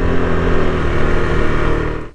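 KTM RC 390's single-cylinder engine running at a steady cruising speed, with a continuous rush of wind and road noise.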